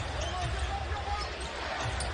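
A basketball being dribbled on a hardwood court, repeated bounces under arena background noise.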